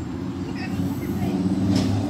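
A vehicle engine running steadily: an even, low drone that holds without rising or falling.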